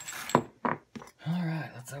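A few sharp clicks and rustling as a small steel Hornady Lock-N-Load press bushing and its clear plastic packaging are handled and set down on a plywood bench. A man's voice follows in the second half.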